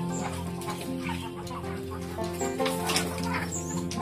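Background music of long, held notes, with village chickens clucking over it at intervals.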